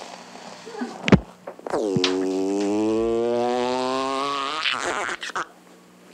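A man making a long buzzing mouth noise, a rubbery raspberry-like drone held for about three seconds and rising slightly in pitch, imitating a rocket taking off. A sharp click comes just before it.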